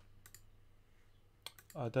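A few sharp clicks of a computer mouse: a quick pair about a quarter second in and a small cluster near the end, at low level.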